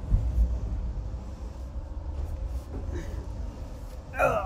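Low, steady rumble of a moving passenger train heard from inside a sleeper carriage, with a few low thumps of the phone being handled and someone settling onto the berth in the first half second.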